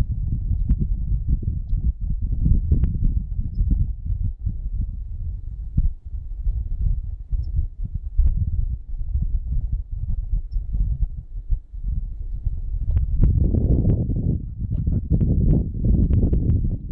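Low, uneven rumble of wind buffeting a handheld phone microphone, with scattered knocks from handling; it grows fuller in the last few seconds as the phone is moved about.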